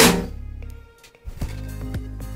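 Microwave oven running with its outer cover off, giving a low steady hum (ugong) from its transformer and newly replaced magnetron; a mild hum like this is normal for a working magnetron. A sharp knock comes at the very start, and the hum drops away briefly about a second in before returning.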